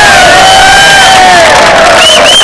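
Crowd of men cheering and shouting, with several long drawn-out calls overlapping.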